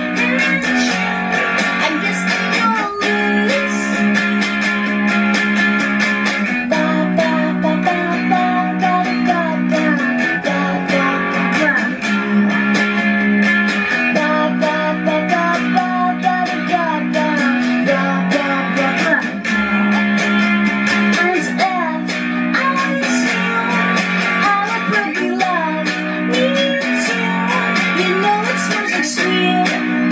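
A solo electric guitar strummed steadily in chords, with a woman's voice singing a pop-rock melody over it.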